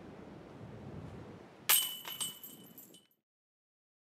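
Disc golf putt striking a metal chain basket: a sharp metallic crash of chains about a second and a half in, a second clink half a second later, with ringing that fades before the sound cuts off abruptly.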